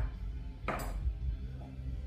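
Background music with a steady bass line, and one sharp clink of metal bar tools against each other or a glass about two thirds of a second in, as cocktail ingredients are measured out.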